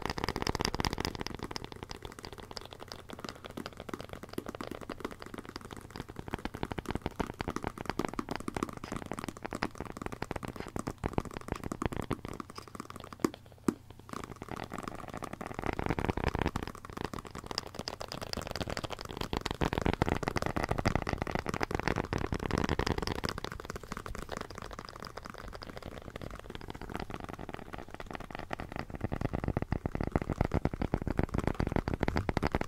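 Fingers tapping and scratching rapidly on the cover of a pocket dictionary, with several tapping recordings layered over one another into a dense, continuous patter. There is a brief quieter dip with two sharp taps about halfway through.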